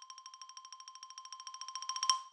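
Short logo jingle: one bell-like chime note struck rapidly over and over, about fifteen times a second, swelling in loudness toward the end.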